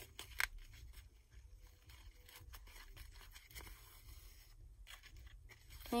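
Faint rustling and small clicks of a ribbon bow being handled as its centre is hand-stitched, with one sharper click about half a second in.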